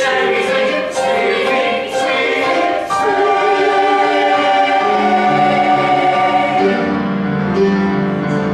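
Mixed chamber choir singing: short detached phrases for the first three seconds, then a long sustained chord, with lower voices entering underneath about two seconds into it.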